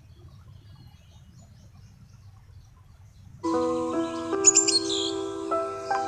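Faint low background noise, then about three and a half seconds in, background music starts suddenly: slow, sustained chords with bird chirps over them.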